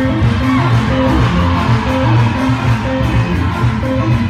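Loud dance music with a repeating bass line.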